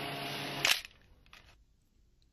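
Steady hum of factory workroom machinery with a few even tones, cut off by a single sharp click less than a second in, then near silence.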